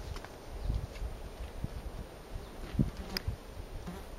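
A flying insect buzzing close by, over irregular low rumbling thumps, with one sharp click about three seconds in.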